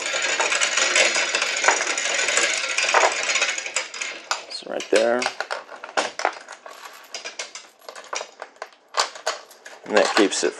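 Steel hand chain of a geared chain hoist rattling as it is pulled through the hoist to raise a bed. It is a fast continuous clatter for about the first four seconds, then slower separate clinks and clicks as the pulling eases.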